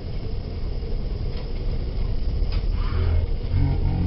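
Motor vehicle driving, heard from inside: a steady low engine and road rumble with a few light rattles, growing somewhat louder and deeper toward the end.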